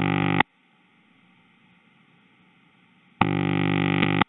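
Analog telephone ring tone played in its on-off cadence: a steady pitched tone ends about half a second in, about three seconds of near-quiet line hiss follow, and the tone comes back for another burst of about a second near the end.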